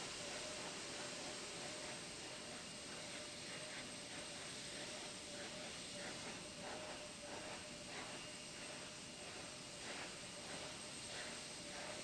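Faint steady hiss with a thin steady hum tone: the background noise of the broadcast audio feed.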